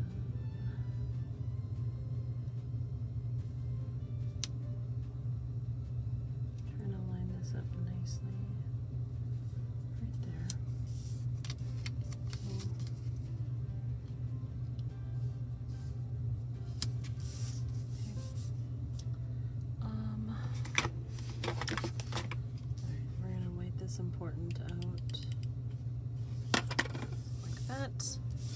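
Stickers being peeled and pressed onto paper planner pages: intermittent rustling, crinkling and tapping over a steady low hum.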